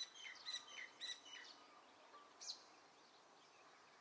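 Faint birds chirping over a light outdoor hiss: a quick run of short high notes in the first second and a half, then a single call about two and a half seconds in.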